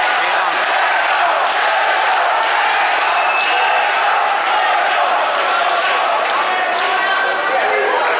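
Fight crowd shouting, many men's voices overlapping into a loud, steady din, with sharp impacts cutting through it every half second or so.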